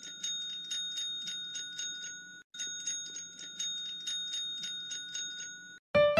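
A service bell struck rapidly by a cat's paw, about three to four dings a second, in two runs with a short break about two and a half seconds in. It stops near the end.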